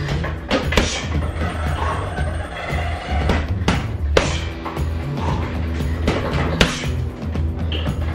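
Boxing gloves striking a round uppercut heavy bag: several sharp thuds at uneven intervals, some in quick pairs, over background music with a heavy bass beat.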